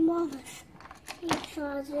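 Speech, with a single sharp click of plastic toy parts being handled about a second in.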